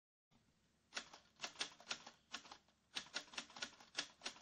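Typewriter keys striking one at a time in an uneven rhythm, starting about a second in: a typing sound effect for lettering being typed out.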